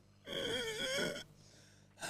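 A person's high-pitched, wavering mock-crying wail lasting about a second, imitating someone sobbing.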